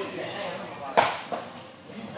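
A sepak takraw ball kicked hard during a rally: one sharp smack about a second in, then a fainter knock a moment later.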